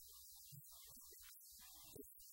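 Near silence: a faint low electrical hum with hiss underneath.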